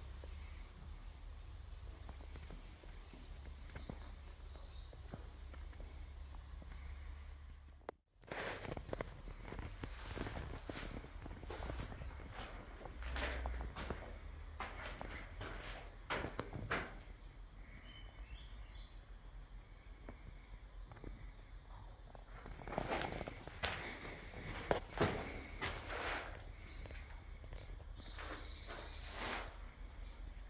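Footsteps and scuffs on a debris-strewn floor, irregular and close, with the sound cutting out for a moment about eight seconds in.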